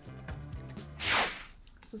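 A short, sharp whoosh about a second in, a rush of noise sweeping downward, like an editing swoosh effect, over quiet background music.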